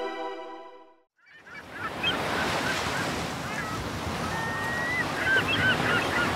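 A music track fades out within the first second. After a short silence, a steady surf-like rushing noise swells in with scattered short, high bird calls.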